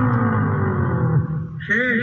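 A man's voice holds one long, drawn-out call whose pitch slowly falls, then breaks off. Near the end come rapid shouts of "chhe" ("six"), calling a six hit by the batsman.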